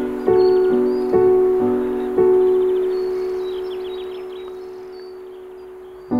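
Slow solo piano music: a handful of notes struck about half a second apart, the last one left ringing and fading away for nearly four seconds.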